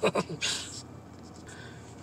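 A man's chuckling laughter trailing off, followed by a breathy exhale, then quiet room tone inside a car.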